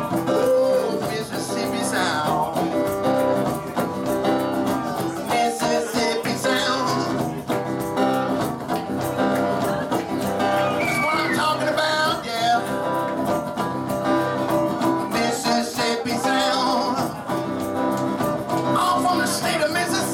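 Live blues played on an electric guitar through a small amplifier, going on steadily without a break.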